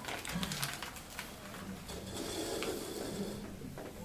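Quiet handling noises as a small paper packet of table salt is opened for spooning into a beaker of water: light clicks and a soft rustle lasting about a second just past the middle.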